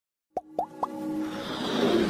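Logo intro sting: three quick plops, each gliding upward in pitch, about a quarter second apart, then a whoosh that swells louder toward the end.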